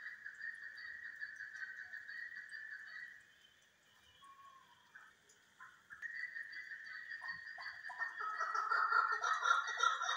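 Chukar partridges calling in a rapid, chuckling series. The calling drops away for a few seconds in the middle, then comes back and grows louder and more excited near the end.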